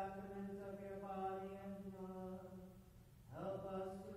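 Voices singing a slow sacred chant in unison in a reverberant church, holding long steady notes. The sound dips just before three seconds in, and the next phrase begins.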